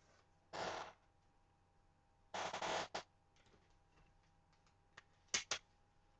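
Sheets of paper and cardstock being handled and slid on a cutting mat: a few short rustles, with two quicker, sharper ones near the end.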